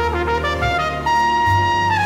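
Music led by a trumpet, over a steady low bass. A quick run of notes gives way, about a second in, to a long high note that bends down at the end.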